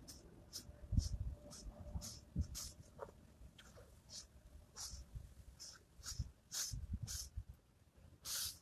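A man breathing hard through push-ups: short sharp exhales, roughly two a second and uneven, fairly faint, with a few dull low thumps.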